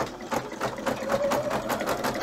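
Husqvarna Viking Designer 1 embroidery machine stitching out the first colour of a design, its needle running in a rapid, even rhythm of stitches.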